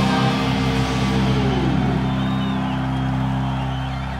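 Electric guitars and bass of a heavy metal band holding a chord that rings on and slowly fades. One note slides down in pitch a little before halfway.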